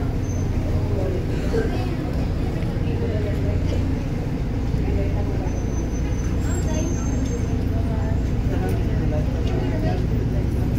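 Volvo B290R rear-engined city bus heard from inside the cabin while under way: a steady low engine and drivetrain drone with road noise.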